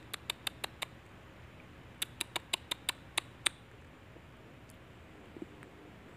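Quick, sharp taps on the water in an eel burrow to lure the eel out, about six a second, in two short runs: one at the start and one from about two seconds in.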